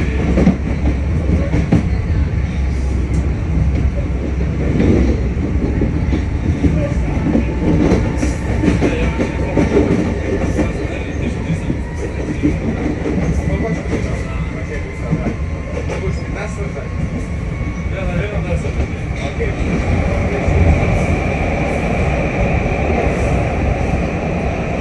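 LIRR Budd M3 electric multiple-unit train running along the track, heard from the leading car: a steady rumble with wheels clicking over rail joints and switches. From about eight seconds in, a thin whine rises slightly in pitch.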